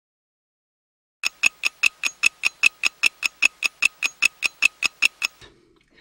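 Rapid, even mechanical ticking like a clock or ratchet, about five ticks a second, starting about a second in and stopping about a second before the end: an intro sound effect.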